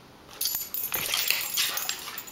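Dogs play-fighting: a burst of dog noise and scuffling, with jingling from collar tags, starting about half a second in.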